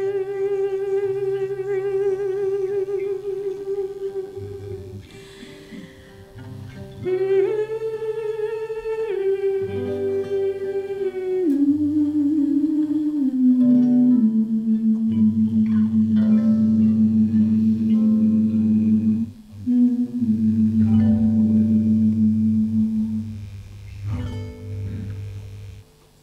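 A woman's voice singing wordless, humming-like held notes with vibrato over acoustic guitar. The melody climbs briefly, then steps down and settles on a long held low note, and the music stops near the end.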